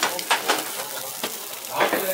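Meat sizzling on a tabletop grill plate, a steady hiss with scattered sharp crackles.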